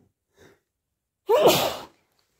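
A person's faint intake of breath, then one loud sneeze about a second and a half in. It comes from an itchy, runny nose that the sneezer wonders may already be hayfever.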